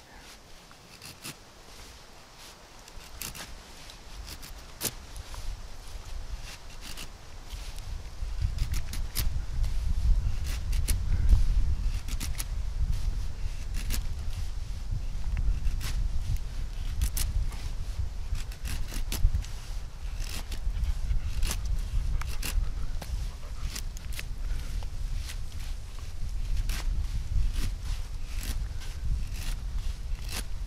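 A Scandi-ground bushcraft knife shaving long curls off a wooden stick in repeated short scraping strokes: a feather stick being carved. A low rumble runs beneath the strokes from about eight seconds in.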